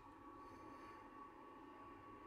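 Near silence: faint room tone with a thin, steady high whine.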